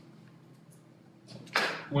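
Quiet room tone with a few faint ticks. About one and a half seconds in comes a short swish, then a man's voice begins.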